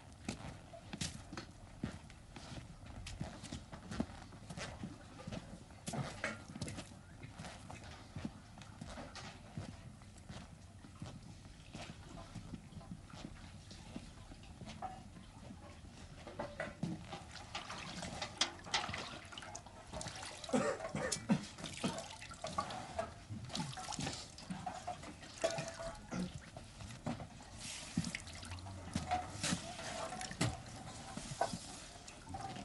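Scattered footsteps and knocks on a wooden floor, with small handling noises. In the second half water splashes and drips in a metal bucket as hands are washed in it.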